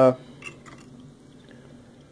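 Faint, wet sounds of a utensil lifting and stirring saucy ramen noodles in a bowl, with a few light clicks about half a second in.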